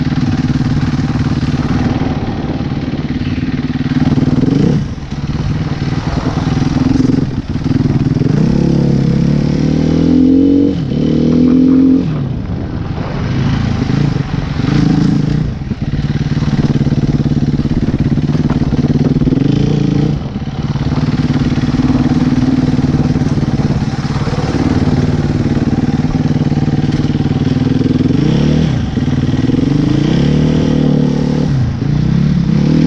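Motorcycle engine running while being ridden slowly, its pitch rising and falling again and again as the throttle is opened and closed, with short dips between pulls.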